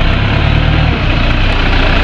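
Toyota Hilux pickup's engine running at low speed as the truck is manoeuvred: a steady, loud low rumble.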